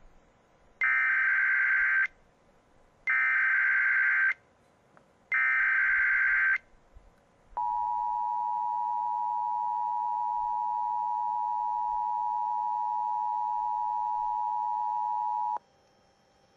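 Emergency Alert System activation over broadcast radio. First come three bursts of SAME digital header data, each about a second long and a second apart, a shrill warbling screech. Then the EAS attention signal, a steady two-tone alarm, holds for about eight seconds, introducing a tornado warning.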